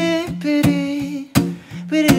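Solo acoustic guitar strummed with sharp percussive strokes, under a man's voice humming or singing long wordless held notes that slide from pitch to pitch.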